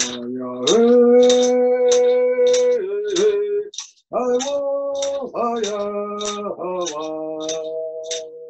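A man singing a Coast Salish canoe-journey healing song in long held notes, with a short break about halfway through. A steady beat of sharp ticks, about two a second, runs under the voice.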